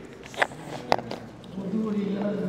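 Two sharp clicks about half a second apart, then a person starts talking near the end.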